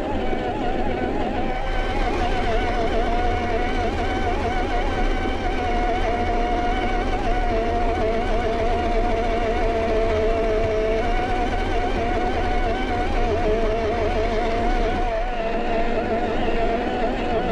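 Traxxas TRX-4 Defender RC crawler's brushed electric motor and gearbox whining steadily as it drives over grass and dirt, the pitch wavering with the throttle, over a low rumble.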